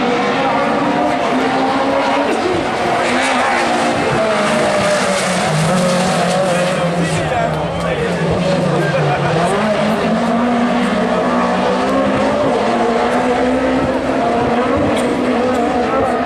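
A pack of Super 1600 rallycross cars racing, several small four-cylinder engines revving hard together, pitch rising and falling as they accelerate and lift through the corners.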